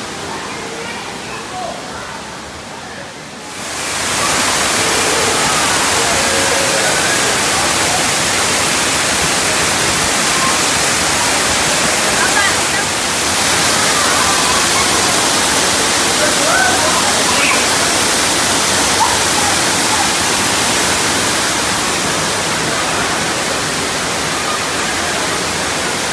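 Artificial waterfall pouring off a rock grotto into a swimming pool: a steady, loud rushing of falling water that swells about three and a half seconds in and holds, with faint voices of swimmers underneath.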